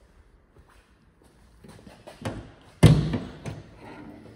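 Boot lid of a 1961 DKW F11 being unlatched and lifted open: a few light clicks, then one sharp clunk about three seconds in, followed by a couple of smaller knocks.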